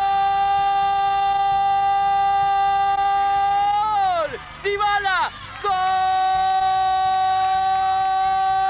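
A football commentator's drawn-out "¡gol!" cry. The voice holds one steady shouted note for about four seconds and falls away, breaks into a few quick syllables, then rises into a second long held note.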